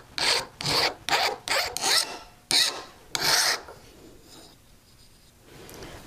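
Hand file stroked back and forth across the metal face of a bezel rocker, about seven quick file strokes, filing off a casting line and sharp edges. The strokes stop a little past halfway, leaving only faint room noise.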